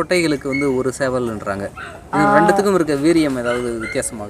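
Kadaknath chickens calling in their pen: a run of short calls, then one long drawn call from about two seconds in.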